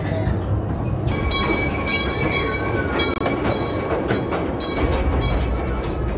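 Amusement-park ride train rolling along its track with a steady low rumble that gets heavier near the end. From about a second in until about five seconds, a repeated ringing tone sounds roughly twice a second.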